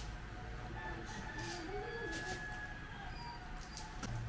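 A rooster crowing, faint, about a second in: a single rising, wavering call over a low steady hum.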